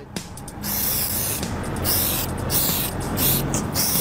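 Steady hiss of wind and tyre noise inside a moving car with the side window down, rising about half a second in.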